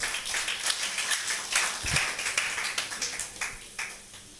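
Congregation applauding, many hands clapping at once, dying away over about three and a half seconds.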